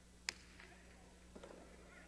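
A single sharp crack of the hard jai-alai ball in play, echoing faintly in the fronton, followed by fainter soft sounds about a second and a half in.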